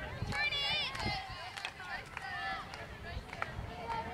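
Indistinct high-pitched shouting and chatter of girls' voices, several overlapping, with no words made out.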